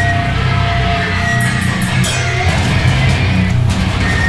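Live heavy band playing loud: distorted electric guitar and bass ring out over a held low chord, with a thin sustained higher tone above it.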